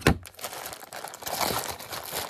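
Clear plastic bag crinkling and rustling as it is handled around a blood pressure monitor cuff, with a sharp knock right at the start.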